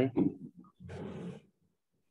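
A man's voice trails off, then about a second in comes a short breathy noise into the microphone, lasting under a second.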